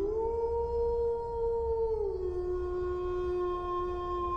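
A long howl held on one steady note for about two seconds, then dropping to a lower note that is held to the end, over a low background rumble.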